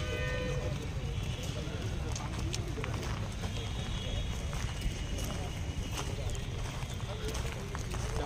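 Outdoor ambience of people walking on a dirt site: a steady low rumble of wind on the microphone, with footsteps and faint voices. A long, steady animal call, in the manner of cattle lowing, runs on from before and ends about half a second in.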